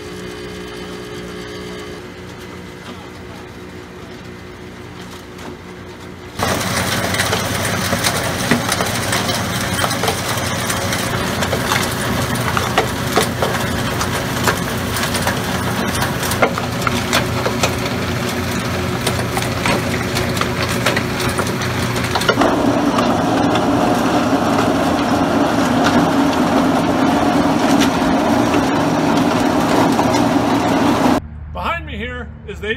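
Hard-rock ore processing machinery running. It starts as a steady motor hum while crushed rock slides along a vibrating feeder. About six seconds in it turns suddenly much louder: crushed rock clattering with many sharp cracks. In the last quarter a heavier droning hum joins in.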